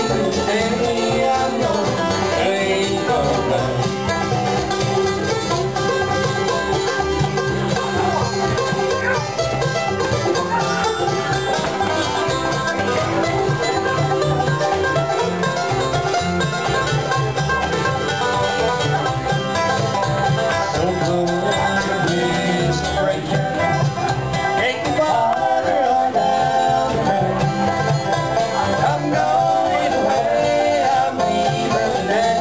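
Bluegrass band playing an instrumental break, with the banjo picking the lead over acoustic guitar, mandolin and upright bass.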